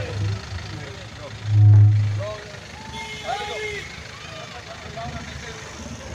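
A vehicle's engine running amid scattered crowd voices, with a low rumble that swells for under a second about a second and a half in.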